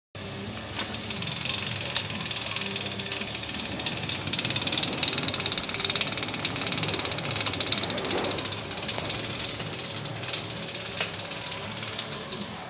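Dense crackling and rustling close to the microphone, full of small clicks, over faint music and some talk in the background.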